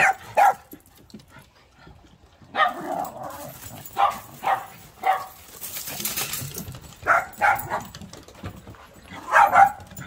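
Small dogs yapping during play: short, sharp barks scattered through, with a quick run of them near the end.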